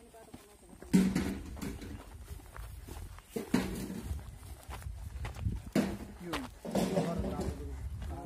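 People's voices talking in short snatches while walking, with footsteps on a dirt and gravel track.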